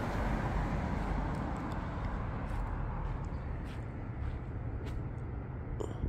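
A car passing on the road, its tyre and engine noise slowly fading away.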